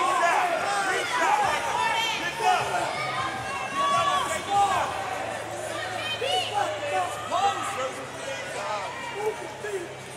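Arena crowd: many voices calling out and chattering over one another, with no single voice leading.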